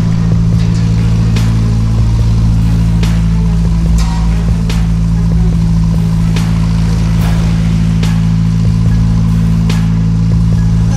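Narrowboat's diesel engine running steadily, a loud low drone echoing inside a narrow brick canal tunnel, with a few sharp clicks or knocks scattered through.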